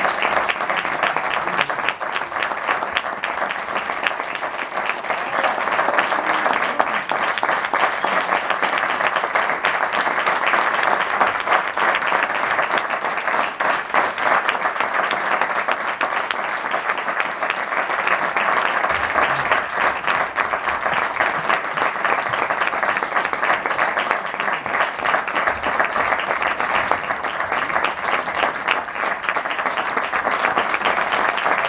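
Theatre audience applauding, many hands clapping at a steady level.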